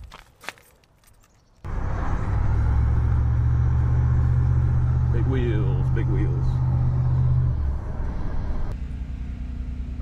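A few faint clicks, then a steady low drone of a Dodge Dakota pickup's engine and road noise, heard from inside the cab as it drives towing a loaded car trailer. The drone eases off near the end.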